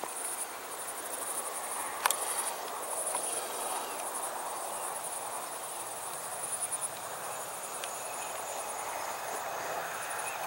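Crickets chirping in a steady, fast-pulsing high-pitched trill, over a steady background rush of outdoor noise. A single sharp click sounds about two seconds in.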